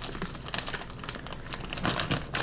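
Plastic bag of frozen tater tots crinkling as it is handled.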